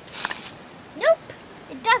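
Sand poured from a plastic toy shovel onto a plastic dish, a brief hiss lasting about half a second, followed by a boy's voice.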